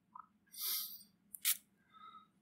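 Faint breath and mouth sounds from a man at a lectern microphone during a pause in his talk: a soft breath about half a second in, then a small click and a short hiss near the end.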